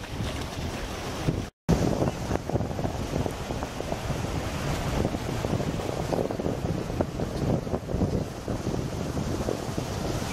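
Wind buffeting the microphone over shallow surf washing up the beach, with splashing as a small child wades and crawls through ankle-deep water. The sound drops out completely for a moment about one and a half seconds in.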